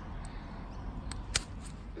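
Outdoor background of steady low road-noise rumble, with two faint clicks a little over a second in.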